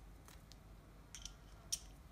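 A few faint, short clicks of steel screwdriver bits being handled in their plastic holder strip, with one bit pushed into the screwdriver's magnetic bit holder. The clearest click comes about three quarters of the way through.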